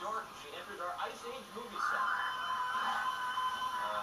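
Television audio heard through the set's speaker in a small room: voices for the first second or two, then music with one long held note.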